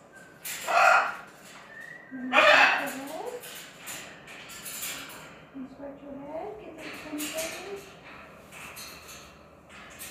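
Blue-and-gold macaw vocalizing: two loud calls about one and two and a half seconds in, then softer, speech-like chatter.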